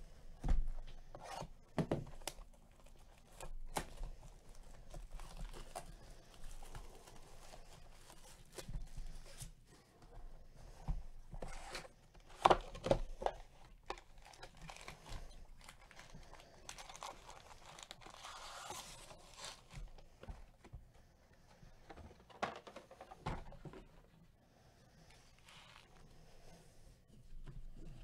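A sealed trading-card hobby box being torn open by hand: plastic wrap tearing and crinkling, with scattered knocks and clicks as the cardboard and foil packs are handled. The loudest moment is about halfway through.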